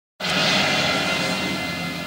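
Cartoon soundtrack played through a 1955 Minerva FS 43 tube television: a loud, steady rushing sound effect that starts abruptly and slowly fades.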